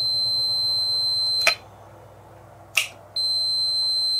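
Multimeter continuity beeper sounding a steady high beep while the electromagnetic battery disconnect switch is latched on, showing its solenoid has closed and shorted the main terminals. The switch is clicked on and off twice: the beep lasts about a second and a half, stops with a click, then starts again with a click about three seconds in and runs for about another second and a half.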